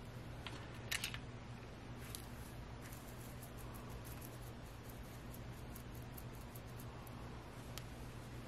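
Fingers digging dried flowers out of a tray of silica gel: faint scattered clicks and fine gritty ticking of the crystals, the sharpest click about a second in.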